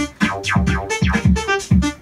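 Electronic beat played from a beat-making app on a phone: low drum-machine thumps about four times a second under short synth keyboard notes.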